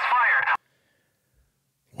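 A man's voice exclaiming, stopping suddenly about half a second in, then near silence.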